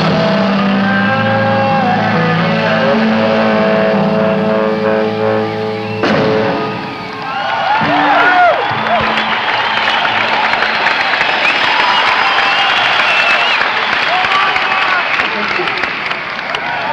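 A rock band's final held chord, electric guitar and bass ringing steadily, stops sharply about six seconds in. The crowd then cheers, shouts and whistles.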